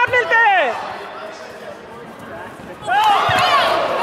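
Several voices shouting during a taekwondo sparring bout, loud at the start and again from about three seconds in, with a quieter stretch between. A single thump comes shortly after the second burst of shouting begins.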